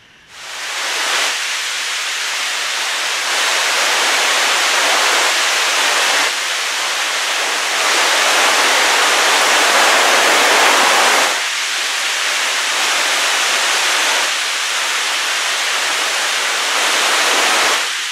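Rushing, falling water of a waterfall and creek: a steady loud hiss with no low rumble, stepping up and down in level several times.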